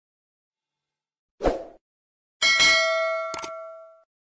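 Logo-reveal sound effect: a short low thud about one and a half seconds in, then a bright metallic ding whose several ringing tones fade out over about a second and a half, with a second brief hit partway through the ring.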